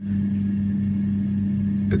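Steady electric hum with a strong low tone from an egg incubator's fan running.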